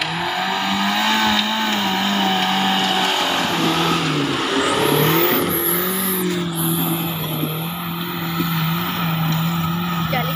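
Suzuki Jimny off-roader's engine running hard at high, fairly steady revs while climbing a steep dirt slope, the pitch dipping briefly about four to five seconds in.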